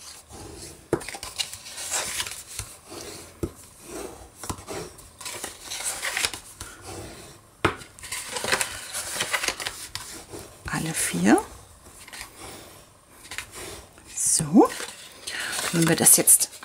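Green cardstock being folded along its scored lines, with the creases rubbed down by a bone folder: irregular paper rustles, short scraping strokes and light taps on the table.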